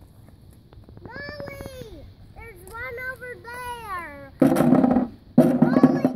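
A young child babbling and vocalizing in a high, sing-song voice. Near the end come two short, loud bursts of noise close to the microphone.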